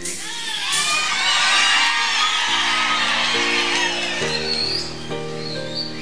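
Wedding guests cheering and whooping together, a crowd of many voices loudest in the first few seconds, as the rings are exchanged. Underneath, instrumental music plays sustained notes, with a low bass line coming in past the middle.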